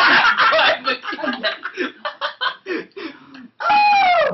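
Several young men laughing together: loud at first, then breaking into short, separate bursts that thin out. Near the end one voice lets out a loud, drawn-out cry that falls in pitch.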